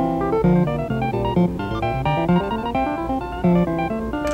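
Computer-driven synthesizer playing back a two-voice keyboard score in a steady run of plucked, piano-like notes. The playback includes ornaments that have just been written into the score, a mordent and a trill.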